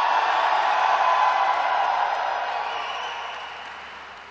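Audience applauding and cheering, swelling up at the start and slowly dying away.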